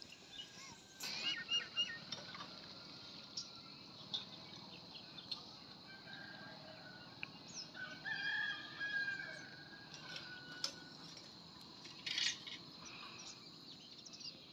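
A rooster crowing, one long held call about eight seconds in, among scattered short chirps of small birds over a faint steady high hiss.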